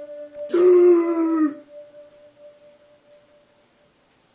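Electronic keyboard tones: a held synth note cuts off, and about half a second in a louder, brighter note sounds for about a second, sliding slightly down as it ends. A fainter held tone then dies away over the next couple of seconds.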